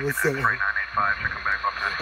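A man's voice talking, the words not made out, with a strongly rising and falling pitch.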